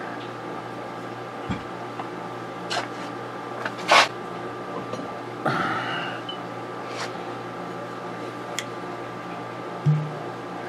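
A glass bottle being handled, with scattered light clicks and knocks and one sharper click about four seconds in, over a steady electrical room hum.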